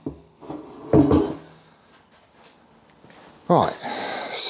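Workshop handling noises as parts are set aside on the bench: a click at the start and light knocking like a drawer or cupboard being shut. About a second in there is a short wordless vocal sound, and another comes near the end.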